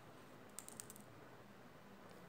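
Faint, light clicks of small plastic buttons being set down and slid on a card number grid on a tabletop, a quick cluster of about five ticks about half a second in; otherwise near silence.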